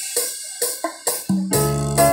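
Yamaha PSR-S975 arranger keyboard playing: a few short percussive hits with keyboard notes, then a held chord over a bass note from about one and a half seconds in.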